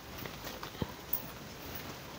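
A few light taps and rustles as sarees in plastic packets are handled, with two short knocks about a second in.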